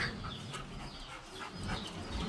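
Faint bird calls: scattered short chirps and clucks.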